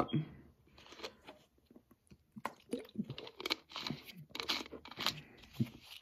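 A man drinking from a plastic soda bottle: quiet, irregular crinkling and crackling of the thin plastic in his grip, with small mouth and swallowing sounds.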